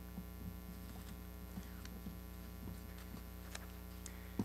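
Low, steady electrical mains hum in the lectern microphone's sound chain, with a few faint short clicks scattered through it.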